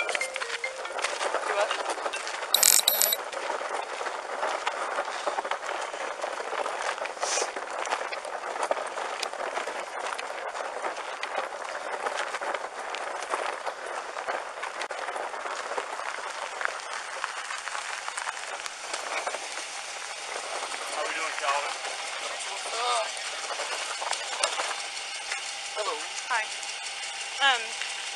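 A wheeled case being dragged across gravel: a continuous rough scraping rattle full of small ticks, with a brief sharp clatter about two and a half seconds in.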